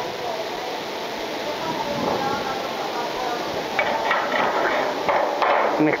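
Light metallic knocks and clinks of small steel tube pieces being handled and set down on a steel door frame, mostly in the second half, over steady workshop background noise.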